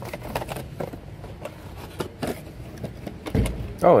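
Cardboard box being torn open by hand, with crackling, rustling handling noise and a dull thump about three and a half seconds in as the bottle comes out.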